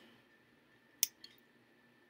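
Near silence between sentences, broken by one short, sharp click about halfway through and a much fainter click just after it.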